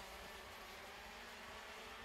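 Faint, steady sound of 125 cc two-stroke KZ2 shifter kart engines running on track.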